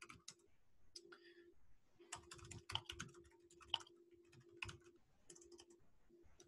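Faint, irregular clicking of computer keyboard keys being typed, heard over an online-meeting microphone.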